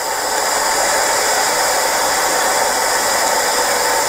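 A steady, even rushing noise that does not change, with no speech over it.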